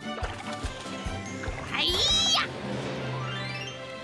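Cartoon background music with a steady beat. About two seconds in comes a short high cry, then a long rising swoop sound effect runs up to the end.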